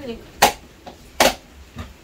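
Kitchen pots and lids knocking as they are handled and set down: two sharp clacks about a second apart, with lighter taps between them.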